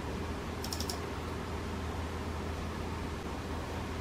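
A quick run of three or four sharp computer clicks about a second in, with a single click right at the start, over a steady low hum and hiss of room tone.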